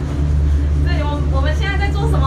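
Steady low hum of a Maokong Gondola crystal cabin travelling along its cable, heard from inside the cabin. A woman's voice comes in about a second in.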